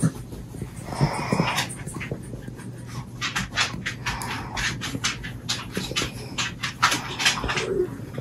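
Quick panting breaths, a few a second, with a short whine about a second in.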